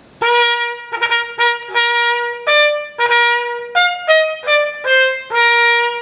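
Trumpet played with a metal straight mute: a short phrase of about a dozen tongued notes, mostly on one repeated pitch, stepping up to a few higher notes past the middle and coming back down. The tone has a bite to it.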